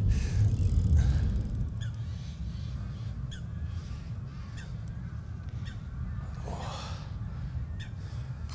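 Low rumble of a military fighter jet departing an air base, loud for the first second or so and then fading to a distant drone.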